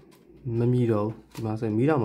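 A man's voice talking in Burmese in two short phrases, with a faint click at the very start.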